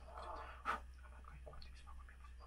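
A man whispering a prayer close into a phone held against his mouth, breathy and without voiced words, with one sharp click about two-thirds of a second in.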